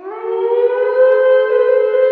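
A siren-like horror sound effect in an animated cartoon: one sustained, wailing tone that swells in and glides up over the first second, then holds steady and loud.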